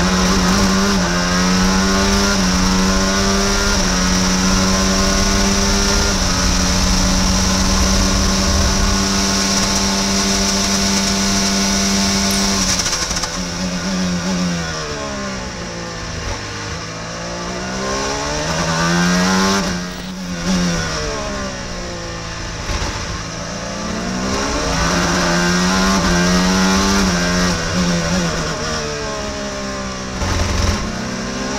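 Onboard sound of an IndyCar's Honda 2.2-litre twin-turbo V6 at racing speed, with wind rush. It holds high revs for the first dozen seconds with small steps as it shifts up. It then falls in pitch through downshifts under braking for slow corners and climbs again under acceleration, more than once.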